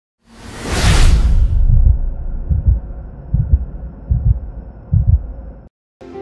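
Cinematic intro sound effect: a whoosh over a deep boom in the first second and a half, then four low thuds a little under a second apart, like a slow heartbeat, cutting off suddenly just before six seconds.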